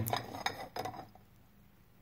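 Steel and friction clutch plates from a Velvet Drive marine transmission clinking against each other as they are handled, a few light metallic clinks in the first second.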